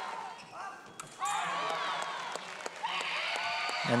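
Women shouting in high-pitched yells during a sabre fencing bout, one long shout in the middle and shorter ones before and after, over scattered sharp clicks and taps from blades and footwork on the piste.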